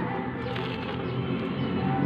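Background music with sustained tones.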